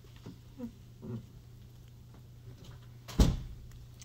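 A single sharp loud knock about three seconds in, from equipment being handled while a classroom document camera is set up. A few faint short rising-and-falling sounds come before it.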